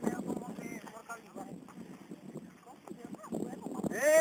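Voices of a group talking and calling in short snatches, with scattered irregular knocks and clicks underneath.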